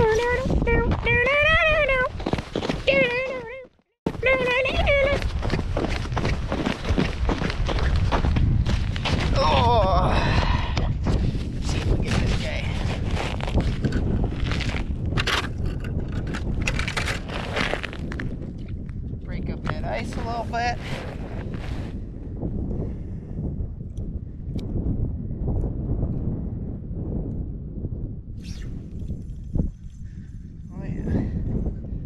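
Wind buffeting the microphone on open ice, a steady low rumble, with scattered knocks and scrapes from handling gear at an ice-fishing hole.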